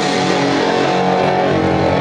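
Loud heavy music with distorted guitar, played over a live venue PA, with sustained low notes.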